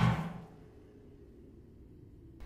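The film's soundtrack cuts out: a short rush of noise dies away within the first half second, then near silence.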